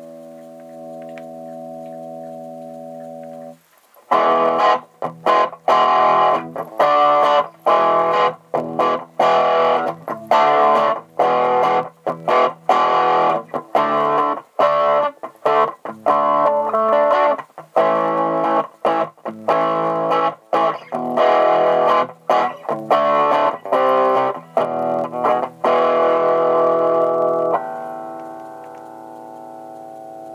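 Electric guitar, a Gibson Les Paul Studio, played through a Marshall MS4 micro amp modded to drive a 10-inch Marshall cab. A held chord rings out, breaks off, and then a long run of short, choppy chords with quick stops between them begins about four seconds in. Near the end it settles on one chord left to ring.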